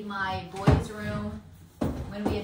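A voice, sung or spoken but not clear words, with two sharp knocks, about 0.7 s and 1.8 s in.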